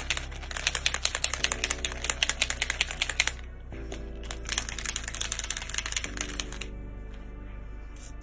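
A water-based acrylic paint marker being shaken hard, its mixing ball rattling in rapid clicks, in two bouts with a short pause between them, to mix the paint before first use.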